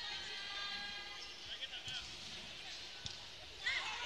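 A volleyball bounced on the hard court floor a few times as a player readies her serve, over faint arena crowd noise and voices.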